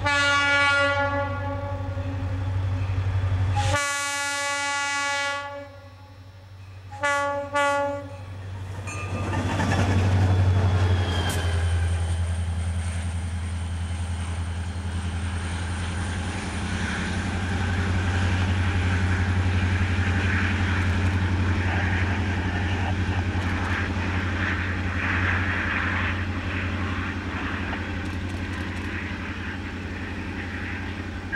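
Diesel locomotive horn sounding for a grade crossing: two long blasts and then two short ones near eight seconds in. Then the locomotive's diesel engine works hard as the train approaches and passes close by, a loud, steady low rumble.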